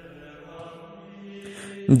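Faint background music of sustained, held notes that change pitch once or twice, with no beat.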